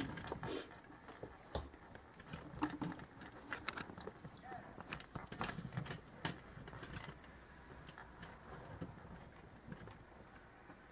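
Faint, scattered light clicks and rustles of handling among the packaging, busier in the first half and sparser later.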